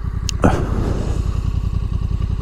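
Honda NT1100's parallel-twin engine (the Africa Twin unit) idling steadily, a low even pulse of firing strokes.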